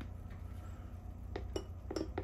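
A plastic rod tapping against a glass beaker and the still-hard shell of an egg soaking in nitric acid. It gives three light clicks in the second half.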